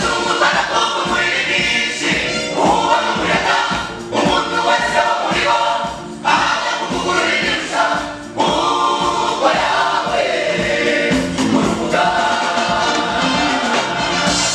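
A gospel choir singing loudly into microphones, led by women's voices, in phrases about two seconds long.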